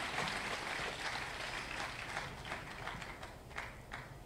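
Faint audience applause that tapers off, ending in a few scattered claps.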